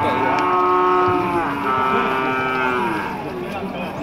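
A young feeder bull mooing: one long call lasting about three seconds, its pitch dropping at the end.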